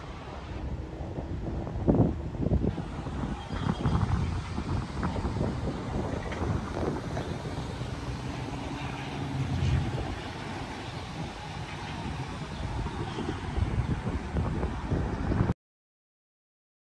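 Wind buffeting the microphone outdoors, an uneven rumble that rises and falls in gusts, with a few brief knocks. It cuts off abruptly near the end.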